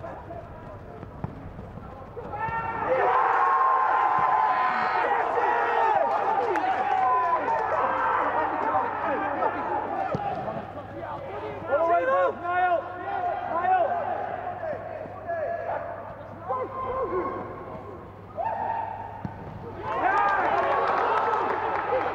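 Footballers shouting to one another during play, several raised voices overlapping and carrying across an empty stadium with no crowd noise, louder from about three seconds in and again near the end.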